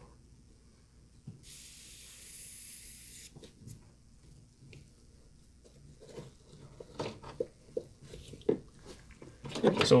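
Pressurised refrigerant hissing out of a mini-split service port fitting for about two seconds as a little air is purged from the valve core removal tool. Light clicks and knocks of the brass fittings being handled follow.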